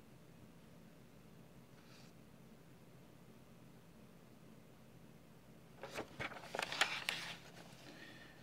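Paper pages of a ring-bound manual being turned and handled, a crackly rustle about six seconds in, over a faint steady low hum.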